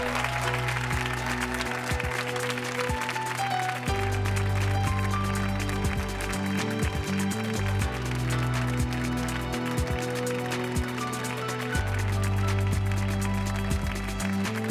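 Instrumental closing theme music of a TV show playing over the end credits, with a steady beat and a bass line that changes notes every couple of seconds.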